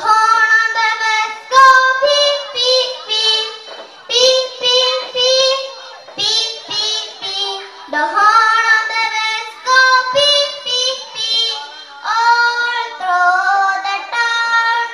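A young girl singing an English children's song solo into a microphone, in short held phrases with brief breaks between them.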